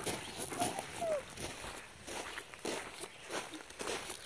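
Footsteps walking on a gravel trail, a series of soft irregular crunches.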